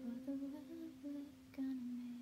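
A singer humming a short closing phrase of a few stepping notes, the last one held, while the ukulele's final strummed chord rings on and fades underneath.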